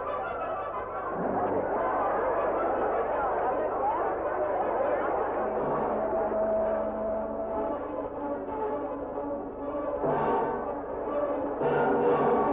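Orchestral film score led by brass, with long held notes over a busy accompaniment and a louder swell about ten seconds in.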